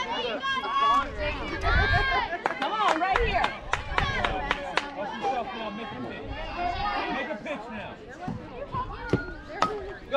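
Overlapping voices of spectators and players talking and calling out at a softball field, with several sharp knocks in the middle and another near the end.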